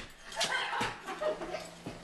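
A woman's high-pitched, squeaky stifled giggling in short wavering bursts, with a light knock near the end.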